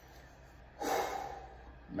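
A man's single audible breath into a close microphone, about a second in, over quiet room tone.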